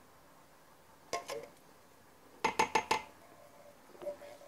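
A metal can tapped against the rim of a stainless-steel pressure-cooker inner pot to knock the last peas out: one knock about a second in, then a quick run of about five ringing metal clinks.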